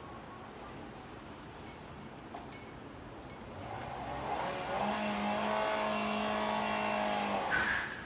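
A motor vehicle's engine passing by: over quiet room tone, a steady engine note swells in about halfway through, holds for a few seconds, then fades near the end.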